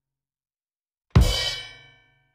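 A single drum hit with a cymbal crash about a second in, ringing out and fading over most of a second; silence before it.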